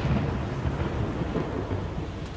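A deep, low rumbling noise that eases off slowly.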